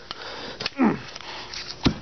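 A person's noisy breath through the nose, then a short falling grunt about a second in, and one sharp knock near the end.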